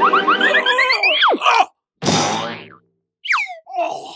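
Cartoon comedy sound effects: a quick run of rising boings, then a long falling swoop. A noisy hit follows and fades over most of a second, then a short falling whistle near the end.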